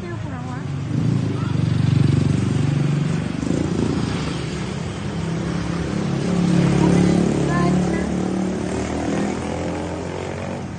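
A motor engine running close by, its low hum swelling louder about two seconds in and again around seven seconds, with faint voices in the background.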